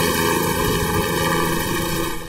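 Helicopter flying overhead, its rotor and engine running with a steady, even sound.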